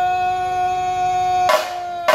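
A wind instrument holds one long, steady note with a short break about a second and a half in.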